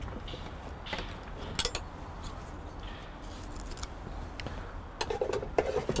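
A few scattered light clicks and knocks of hand tools being handled while the end of a marline seizing is trimmed off.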